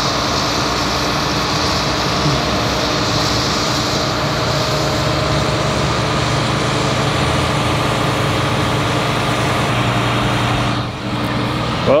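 Flatbed tow truck's engine running steadily, powering the winch that drags a dead Humvee up the tilted bed. The sound eases off about eleven seconds in.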